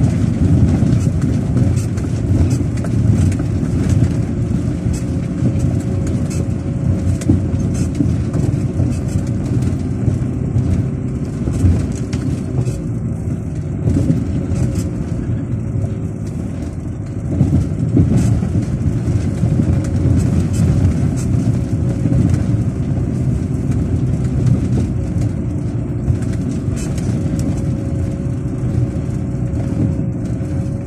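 A vehicle engine running steadily with tyres rolling over a rough dirt track, heard from inside the cabin, with many small knocks and rattles throughout.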